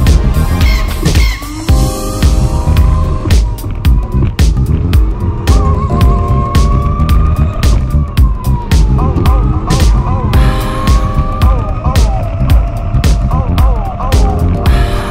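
Background music with a steady beat over a go-kart's motor, whose whine slowly rises and falls in pitch as the kart speeds up and slows through the corners.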